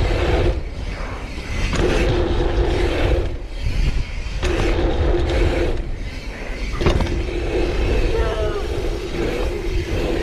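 Mountain bike's rear freehub buzzing as the rider coasts, in four stretches broken by short pauses, over a steady rumble of wind and tyres on packed dirt. A few sharp knocks come at the breaks, and a faint shout is heard about eight seconds in.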